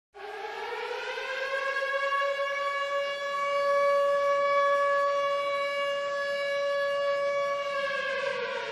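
Civil-defense-style siren winding up over the first second or so, then holding one steady tone.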